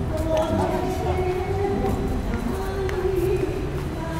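Voices of people talking nearby, with music in the background.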